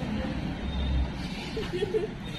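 Low outdoor rumble under faint, indistinct voices of a small crowd, with a brief voice-like sound near the end.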